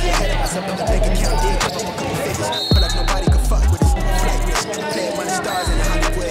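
Hip hop music with a steady beat and a deep bass line, the bass sliding down in pitch a few times near the middle.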